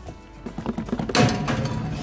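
An Old Town BigWater 132 PDL plastic kayak shaken by hand, its hull and the cup holder expander clamped in its cup holder knocking and rattling from about half a second in, loudest a little past the middle. Background music plays underneath.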